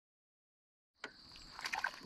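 Starting about a second in, a small panfish splashing and flopping as it is pulled up through a floating salvinia mat, with a quick run of sharp splashes near the end, over a faint steady high whine.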